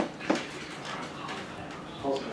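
Two short knocks on a wooden table right at the start, the second about a third of a second after the first, as a pint glass is handled. Low background chatter follows.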